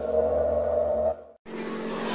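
Held musical chord closing a logo sting, fading out about a second in; after a brief silence, a whoosh sound effect with a falling tone begins to swell.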